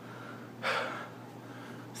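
A man's short audible breath, like a quick gasp, about half a second in, during a thinking pause in his talk; otherwise quiet room tone.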